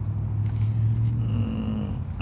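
A low engine hum, as of a motor vehicle going by, strongest in the first second and a half, with a slightly rising whine near the end.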